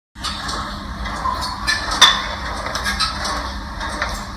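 Gym background noise: a steady din with scattered knocks and clatter, the loudest a sharp knock about two seconds in.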